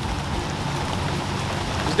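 Heavy tropical-storm rain falling steadily in a torrential downpour.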